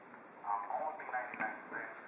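A voice played back through a Nexus 7 tablet's small speaker, thin and without bass, starting about half a second in. It is the audio of a video playing on a computer, streamed to the tablet over remote desktop.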